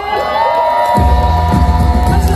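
Live band music with a crowd cheering. The bass and drums drop out for about a second while a held note carries on, then the full band comes back in.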